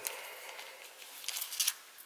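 Trading cards handled between the fingers: a short scrape at the start, then a few quick hissy swishes of card sliding against card about a second and a half in.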